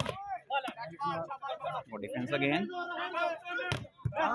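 Men's voices talking and calling out, with a sharp slap of the volleyball on the blockers' hands right at the start and another sharp hit of the ball just before the end.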